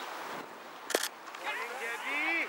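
Cricket bat striking the ball once, a single sharp crack about halfway through, followed by players' voices calling out.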